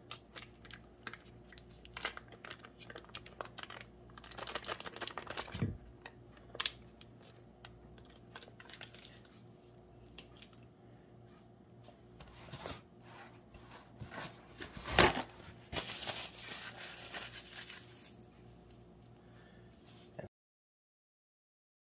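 Paper butter wrapper crinkling and rustling, with scattered light clicks, as a stick of butter is unwrapped and set into a stainless steel mixing bowl. A sharper knock about 15 seconds in is the loudest sound.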